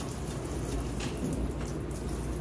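Kitchen faucet running, a steady stream of water splashing into a stainless steel sink.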